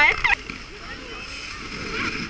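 Skis sliding over packed snow, a steady scraping hiss, after a short laugh in the first moment.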